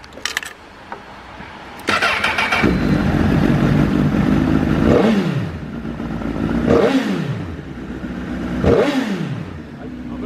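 Honda CBR1000RR (SC57) 998 cc inline-four started on the electric starter: it cranks briefly about two seconds in, catches and settles to idle. It then gets three quick throttle blips about two seconds apart, each rising and falling in pitch, through a Striker center-up aftermarket exhaust.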